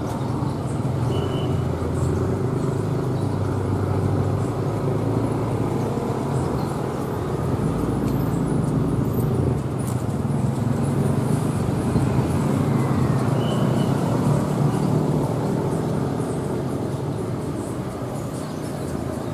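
Diesel-electric locomotive running light without carriages, drawing slowly closer with a steady low engine hum that grows a little louder through the middle.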